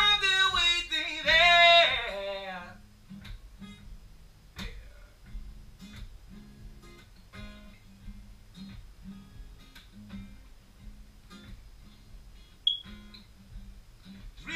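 Acoustic guitar strummed in a steady rhythm, under a man's held, sung vocal line for the first two to three seconds; after that the guitar goes on alone, quieter, in a short instrumental break.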